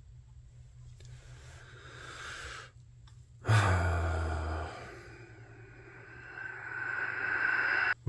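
A man's long, exasperated sigh about three and a half seconds in, with softer breaths before and after it.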